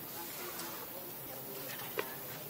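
Faint low cooing calls over a steady hiss, with one sharp click at the very end.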